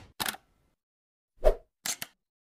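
Sound effects of an animated logo intro: a short click just after the start, a louder pop about one and a half seconds in, and another short click near the end, with silence between them.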